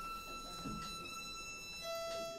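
Violin playing a natural harmonic on the E string, lightly touched at the middle of the string: a steady, pure high note an octave above the open E. Near the end a second note an octave lower comes in beneath it.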